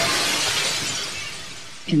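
A crash effect in an ambient track: a rising swell ends in a low hit and a bright crash like shattering glass, which fades over about two seconds.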